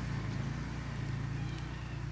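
A vehicle engine idling steadily with a low, evenly pulsing rumble, and a bird's faint chirp about one and a half seconds in.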